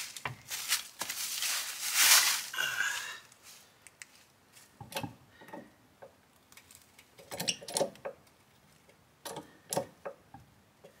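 Handling noises from a car wheel being worked back onto its hub: a burst of rustling over the first three seconds, loudest about two seconds in, then a few scattered clicks and knocks.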